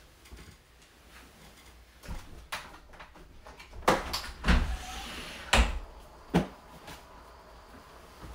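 A person shifting and rolling about on a soft bed: a string of dull thumps with rustling of bedding and clothing, busiest and loudest in the middle, then settling.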